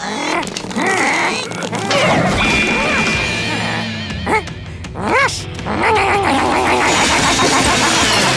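Cartoon background music with slapstick sound effects: several quick swooping pitch glides and a scuffle. A fast run of rapid scratchy strokes joins the music in the last couple of seconds.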